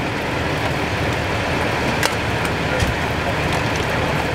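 Fire engine's diesel engine running steadily at the scene, with a few sharp clicks over it.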